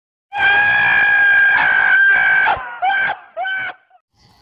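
A frog's distress scream: one long, steady, high-pitched cry lasting about two seconds, then two short cries that bend in pitch.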